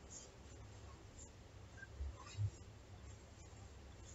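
Quiet handling of a crocheted granny-square blanket on carpet: faint rustling and two soft bumps about two seconds in, over a low steady hum.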